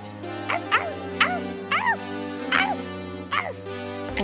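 A small dog yapping about six times in short, uneven bursts over held chords of cheesy MIDI-synth music.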